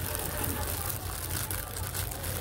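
A steady low hum with faint, scattered light clicks and rustles over it.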